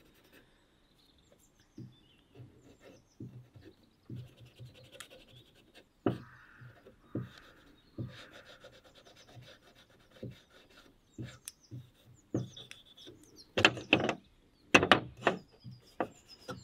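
A scouring pad scrubbing the oiled steel blade of a pair of garden shears in short, irregular rubbing strokes, with a few louder metal clacks from the shears near the end. Birds chirp faintly in the background.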